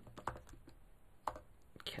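Keystrokes on a computer keyboard: a few faint, scattered key clicks with short pauses between them, typing out a line of code.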